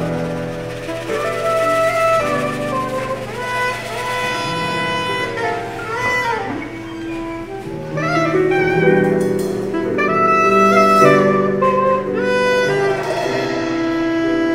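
Live band music led by a soprano saxophone playing the melody, sliding into some notes, over electric bass and keyboard accompaniment.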